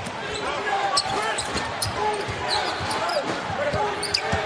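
Basketball game sounds in an arena: the ball being dribbled on the hardwood court against a steady murmur of crowd voices, with short sharp clicks and calls scattered throughout.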